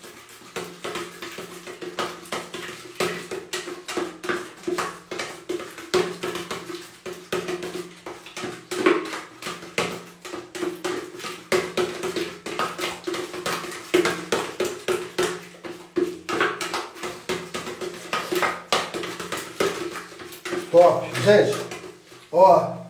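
Steel putty knife stirring and scraping tinted wall putty inside a metal can: a quick run of scrapes and clinks, about three a second, over a steady low hum.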